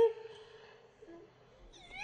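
A short, loud, high-pitched squeal from a toddler right at the start, rising and then held for about a second as it fades.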